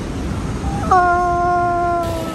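A person's voice holding one long, howl-like note for about a second and a half, starting partway in and sagging slightly in pitch at the end, over steady city street traffic noise.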